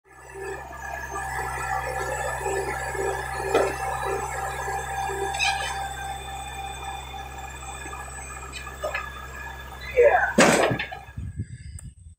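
Compact tractor engine running steadily while its front loader works, with a steady whine over it and a few knocks. Near the end a loud squeal rises in pitch.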